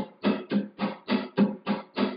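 Flamenco guitar rasgueado played slowly and evenly: repeated strummed chord strokes, several a second. The pattern is the abanico, with the thumb striking up, the middle and index fingers together striking down, then the thumb striking down.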